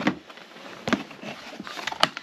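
Hard plastic tool case being opened: a sharp plastic clack as the lid comes up, and another about a second in as it swings open, with light handling noise between.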